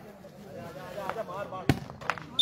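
A volleyball struck hard by hand in play: one sharp slap near the end, over faint distant shouting from players.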